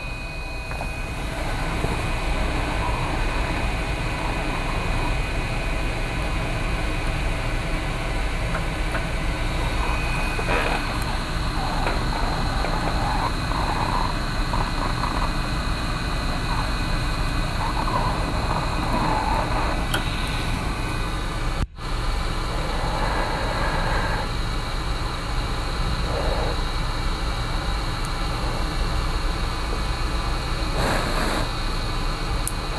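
Hot air rework station blowing steadily on a circuit board to keep it hot, a rushing hiss with a faint high whine. It drops out for an instant about two-thirds of the way through.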